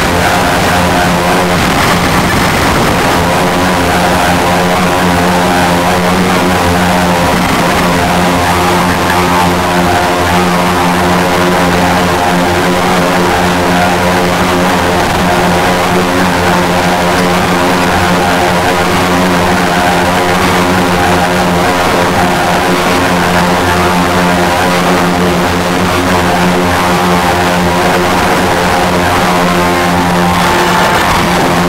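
Electronic drone improvisation on a Ciat-Lonbarde Cocoquantus 2: a dense, steady layering of held low tones, with a strong hum at the bottom and many tones stacked above it.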